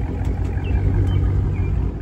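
Dodge Charger Scat Pack's 6.4-litre HEMI V8 idling, heard from behind the car close to its exhaust tips, with a low, steady note that swells slightly about a second in.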